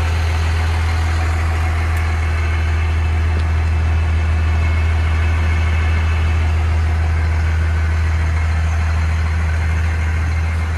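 1993 Dodge Ram 250's 5.9 Cummins 12-valve turbodiesel inline-six idling with a steady, deep hum.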